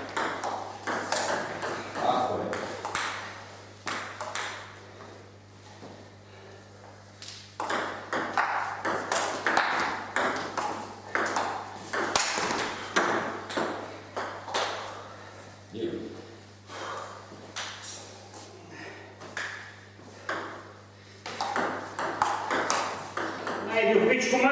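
Table tennis rallies: the ball clicking off rackets and the table in quick back-and-forth strings, three rallies with short pauses between, over a steady low hum.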